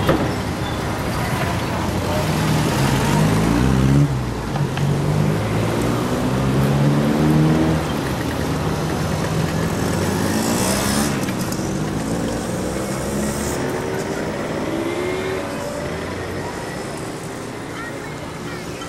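Motor vehicle engine pulling along the road, its pitch climbing as it accelerates and dropping back at each gear change several times, over steady road noise.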